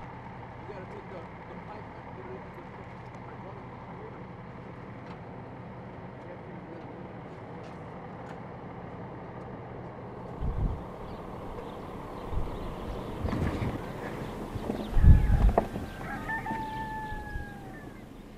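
Steady faint outdoor ambience with a low hum, then scattered low thumps on the microphone from about ten seconds in, and a rooster crowing once near the end.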